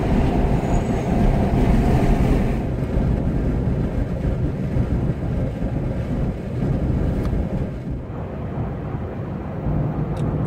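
Steady road and engine noise inside a car's cabin while driving. A higher hiss over the low rumble drops away about two and a half seconds in.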